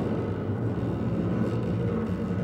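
Contemporary chamber ensemble holding a low, rumbling sustained texture, with a bowed double bass in its low register. Little is heard in the upper range.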